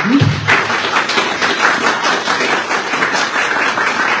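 Audience applauding: many hands clapping in a dense, steady patter, starting a moment in.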